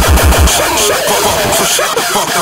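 Hardcore electronic dance music: a rapid, heavy distorted kick drum pounds, then drops out about half a second in, leaving a breakdown of wavering synth sounds without the beat.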